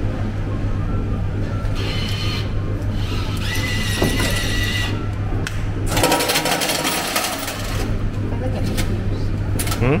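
A token changer pays out a batch of tokens: a rapid clatter of tokens dropping into the metal tray for about a second and a half, starting about six seconds in. A steady low hum runs underneath.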